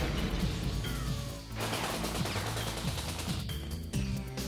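Rapid automatic gunfire with impacts, in two long bursts broken by a short gap about a second and a half in, over background music.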